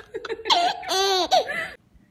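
Baby laughing in a run of high-pitched laughs that rise and fall in pitch, cut off abruptly near the end.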